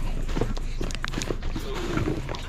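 Footsteps on an asphalt driveway: a person walking quickly, with a steady low rumble underneath.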